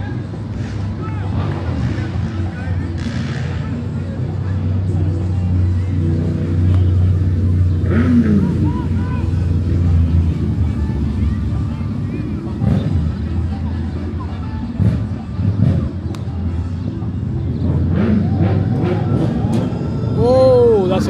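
Outdoor ambience at a ball field: a steady low rumble that swells about a third of the way in, under distant shouts and voices of players, with a few sharp knocks in the second half.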